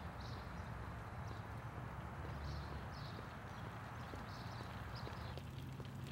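Baby stroller rolling along pavement, its plastic wheels clattering in an uneven rhythm over a steady outdoor background noise, with faint ticks that are clearer near the end.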